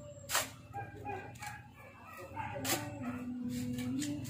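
A shovel biting into a pile of sand twice, about two seconds apart, as sand is dug and thrown. A drawn-out pitched call sounds in the background.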